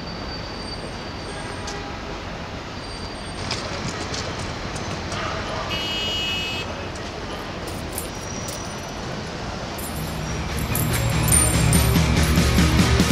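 City street ambience with steady traffic noise, a short high horn-like toot about six seconds in, and scattered light clicks. Music comes in near the end.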